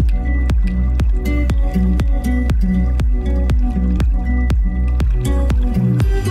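Background music: an instrumental stretch of a pop-rock song with a steady beat and a heavy bass line.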